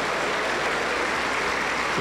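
A large crowd of worshippers applauding together, a dense and steady clapping that holds an even level throughout.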